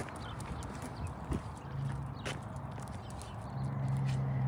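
Footsteps of a person and leashed dogs on a concrete sidewalk, with a few sharp clicks, and a low steady hum coming in about halfway through.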